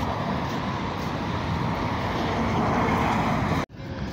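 Steady street noise, mostly the rumble of passing road traffic, with no speech. Near the end it drops out abruptly for a moment.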